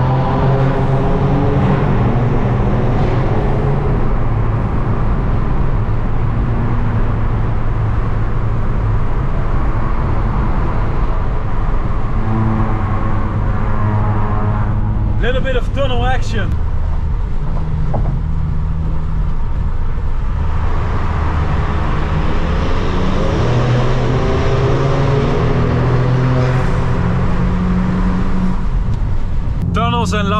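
Car engines with tuned exhausts accelerating and easing off in a road tunnel, heard from inside a car over steady road noise, the engine pitch climbing and dropping several times through the gears.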